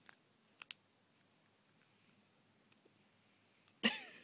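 Quiet handling of a plastic play-dough extruder, with a few short sharp plastic clicks in the first second and a louder sudden sound near the end.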